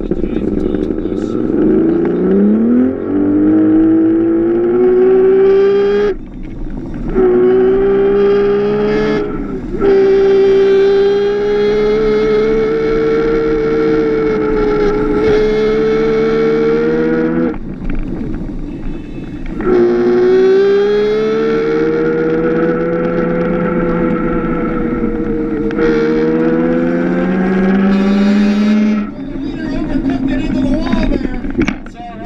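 Electric drive motor of a Power Racing Series ride-on race car, heard from on board. Its whine climbs in pitch as the car pulls away from a standstill, then holds steady at speed. It drops away briefly several times and rises again each time the car accelerates.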